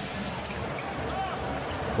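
Steady arena crowd hubbub during live basketball play, with faint sounds of the ball and sneakers on the hardwood court.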